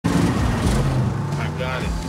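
A car engine running steadily at speed, loud and low-pitched, with a brief spoken line near the end.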